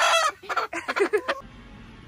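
A hen squawking loudly as she is picked up and held, followed by a quick run of short clucks. The sound cuts off abruptly about a second and a half in, leaving only a faint low hum.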